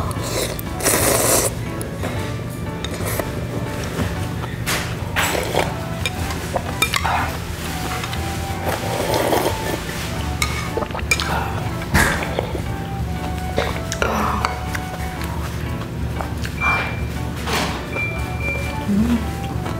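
Ramyun noodles slurped from a bowl, with the strongest slurp about a second in, then further slurps and sips of broth at intervals, over steady background music.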